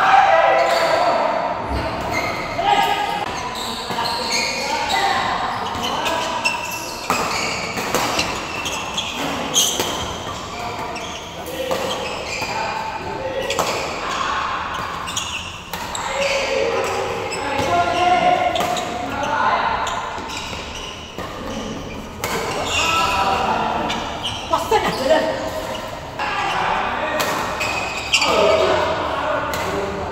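Badminton doubles rallies in a large indoor hall: sharp racket strikes on the shuttlecock at irregular intervals, with people's voices throughout, echoing in the hall.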